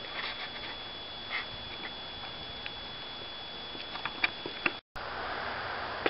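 Faint steady background hiss with a thin constant high whine and a few light scattered clicks and rustles. Near the end the sound drops out abruptly for a moment at a cut in the recording.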